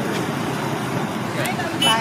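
Steady street traffic noise with background voices, and a brief high-pitched sound just before the end.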